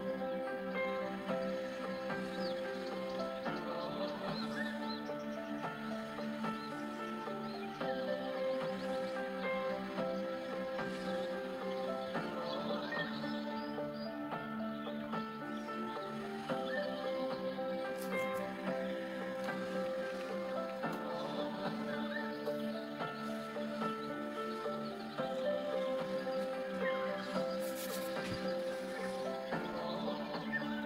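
Background music: slow, sustained chords that change every few seconds.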